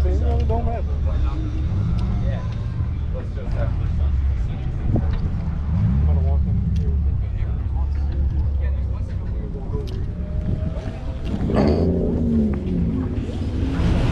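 Indistinct voices of people talking over a steady low rumble, with a burst of nearby talk near the end.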